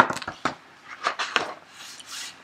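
Paper rustling with several short sharp clicks as the pages of a large hardback picture book are turned and the book is handled.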